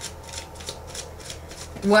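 Tarot cards being handled and shuffled: a run of soft, quick clicks, about four a second.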